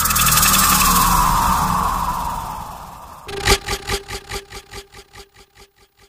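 A loud rushing noise whose pitch falls slowly as it fades over about three seconds, followed by a run of sharp taps about four a second over a steady low tone.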